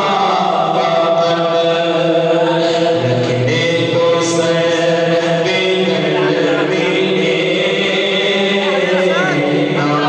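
A man reciting a naat, an Urdu devotional poem, in a melodic chanting voice through a microphone, holding long notes with small turns in pitch.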